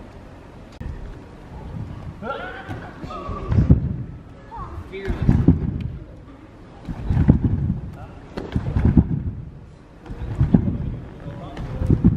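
Trampoline bed being bounced on by a jumping acrobat: a run of about five low thumps, one every one and a half to two seconds, starting a few seconds in. A short vocal shout comes just before the bouncing starts.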